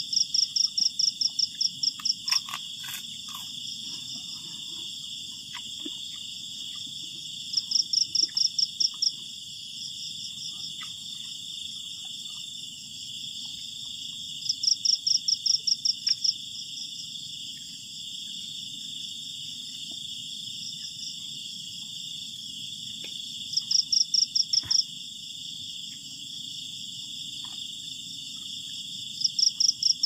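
Night insect chorus: a steady high-pitched buzz, with a louder pulsed trill of about ten quick chirps that comes back roughly every eight seconds.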